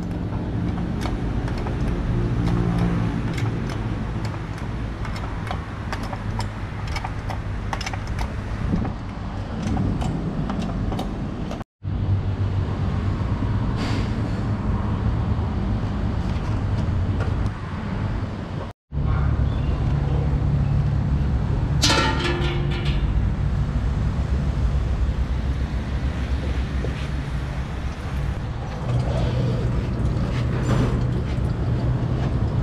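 Steady low mechanical hum of a car-service workshop, with scattered light clicks and clatters of tools. The sound drops out abruptly twice, and a short higher-pitched sound rises above the hum about two-thirds of the way in.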